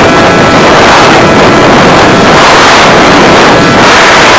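Loud, overloaded rush of wind and propeller noise from an RC plane in flight, picked up by a recorder taped to the airframe, with a faint steady motor whine underneath. The rush swells and eases slightly as the plane manoeuvres.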